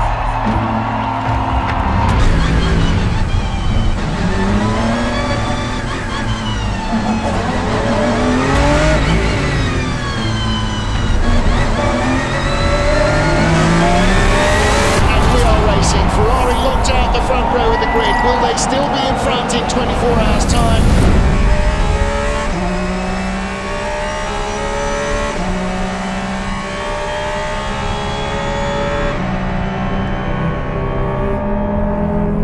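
A pack of race cars passing at speed, many engine notes rising and falling one after another, with music underneath. About two-thirds of the way through the engines fade and low bowed-string music carries on.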